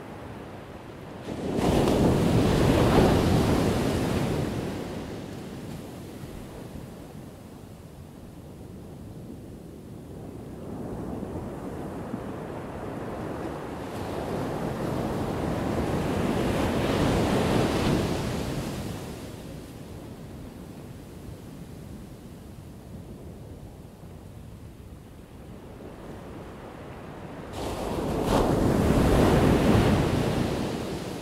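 Ocean surf: waves breaking and washing in. One surge comes in suddenly about a second and a half in, a second builds slowly to a peak past the middle, and a third rises near the end, with quieter wash between them.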